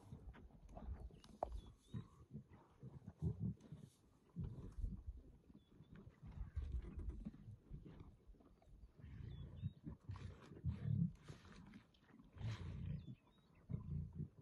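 Lionesses growling in short, low, irregular bursts as they feed together on a kill.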